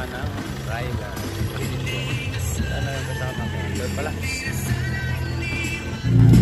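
Music with a bass line that steps between held notes, and a voice over it.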